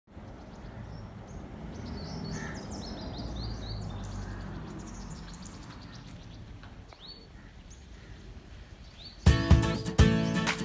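Outdoor ambience with a low steady rumble and small birds chirping in quick runs of short high notes, mostly in the first half. Loud music cuts in suddenly near the end.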